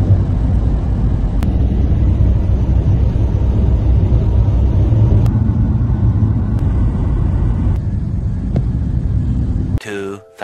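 Road noise inside a moving vehicle: a steady low rumble of tyres and engine that cuts off suddenly just before the end.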